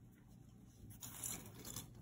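Faint rustling and scraping of a hand moving a small metal brooch across the work surface, starting about a second in.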